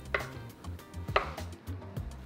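Chef's knife slicing through a block of mozzarella and knocking on a wooden cutting board, two main strikes about a second apart.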